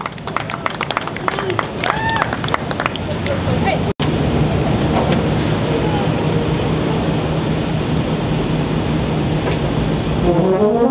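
Outdoor crowd noise between pieces: scattered voices and cheers, then, after an abrupt cut about four seconds in, a steady murmur of talk over a low hum, which is typical of idling buses in a parking lot. Brass chords begin right at the end.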